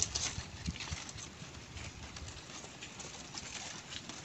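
Stiff palm-leaf strips rustling and crackling as they are plaited by hand, with a few small clicks and knocks in the first second.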